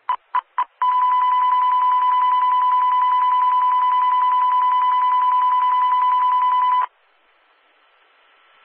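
NOAA Weather Radio alert: three short beeps, then the 1050 Hz Warning Alarm Tone held steady for about six seconds before cutting off suddenly. It is the alarm for a winter storm warning in an EAS activation that failed.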